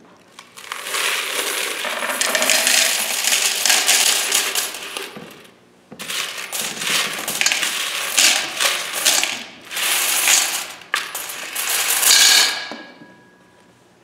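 A large load of coins poured from a plastic bucket into a brass offering bowl, a dense clatter in two long pours with a short pause between them. As the second pour ends, the last coins ring briefly in the metal bowl.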